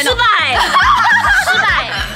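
Young women talking and laughing over background music with a steady beat of about four thumps a second.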